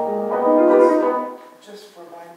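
Piano playing a classical passage, stopping about a second and a half in, the last notes dying away.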